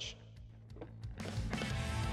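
Background music with a steady beat, faint for the first second and then fuller from about a second in.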